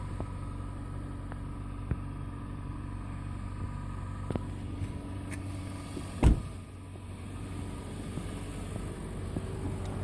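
Steady low hum of a car engine idling, with a single loud thump about six seconds in.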